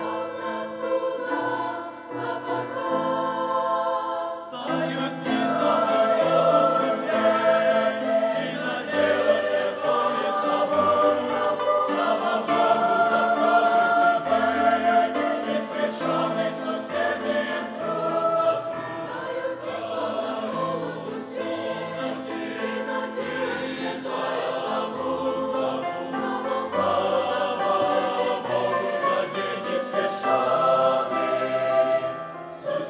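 Mixed youth choir singing a hymn in several voice parts, the sound filling out and growing louder about four and a half seconds in.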